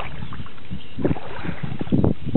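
Strong wind buffeting the microphone: a steady low rumble with stronger gusts about a second in and again near the end.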